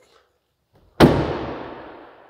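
A 2023 Jeep Wrangler's front passenger door shut once, hard, about a second in, with a long echo that dies away over the next second.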